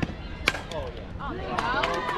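Softball bat striking a pitched ball with one sharp crack about half a second in. Spectators then start shouting and cheering from a little past one second.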